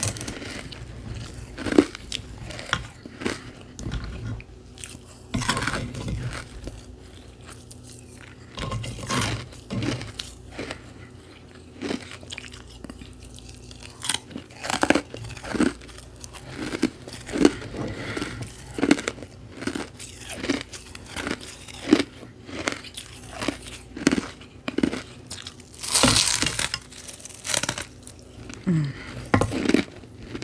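Close-miked crunching of carbonated ice pillows, crispy hollow frozen ice, being bitten and chewed. A long run of sharp crunches, with the loudest big bite near the end.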